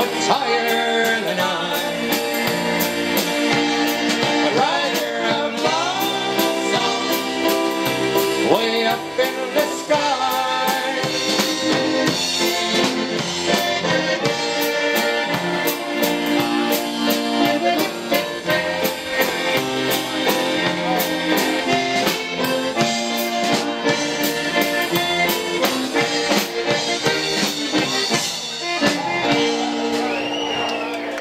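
Chemnitzer concertina playing a waltz melody, backed by a small live band with keyboard, guitar and drums keeping a steady beat.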